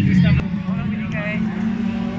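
Dirt-track race car engine running, loud at first and dropping noticeably quieter about half a second in as it moves off, with brief spectator voices over it.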